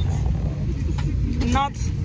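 Steady low rumble inside the cabin of an airliner parked at the gate, with a woman saying a word about a second and a half in.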